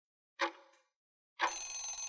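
Countdown timer sound effect: a single tick, then about a second later a bell-like ring lasting just under a second as the countdown runs out.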